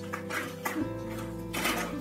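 Background music: a plucked guitar tune over held bass notes, with the bass shifting just before a second in.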